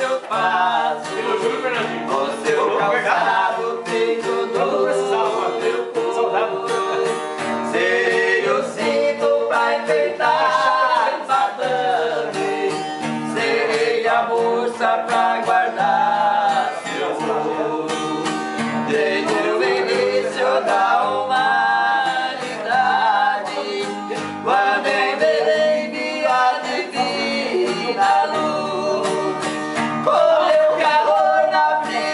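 A man singing while strumming and picking an acoustic guitar, with a continuous sung melody over the guitar throughout.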